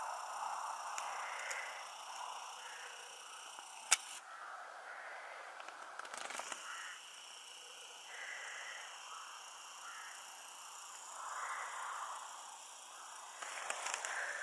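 Faint open-air countryside ambience, a soft uneven background with no clear single source. One sharp click about four seconds in.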